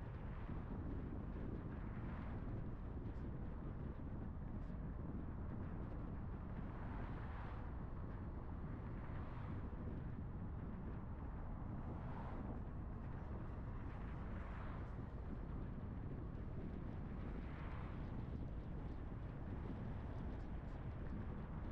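Steady road noise of a car driving along a city street: a continuous low rumble of tyres and wind, swelling softly every few seconds.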